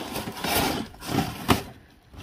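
Wooden decor signs being shifted about in a cardboard box: scraping and rubbing, with a sharp wooden clack about one and a half seconds in.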